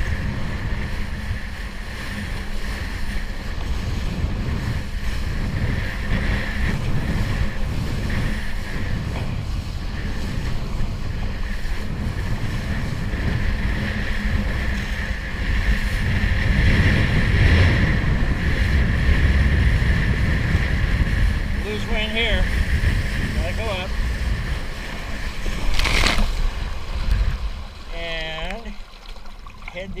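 Wind buffeting the microphone over water rushing under a kiteboard while riding, with one sharp knock about four seconds before the end.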